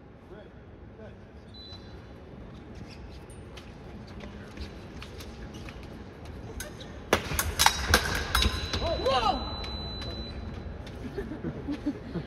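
Epee fencing exchange on a metal piste: light footwork at first, then about seven seconds in a sudden quick cluster of sharp metallic clicks and stamps as the blades meet and feet hit the strip, followed by a brief shout.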